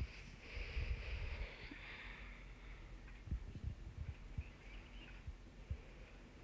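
Faint handling sounds as chopped parsley and cilantro are scooped by hand from small glass bowls: a soft rustle in the first couple of seconds, then a few light knocks.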